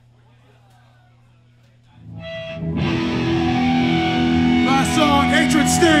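Distorted electric guitar comes in about two seconds in and rings out with held chords, with sliding notes near the end: the opening of a hardcore punk song, before the drums join. Before it, only faint crowd chatter and amplifier hum.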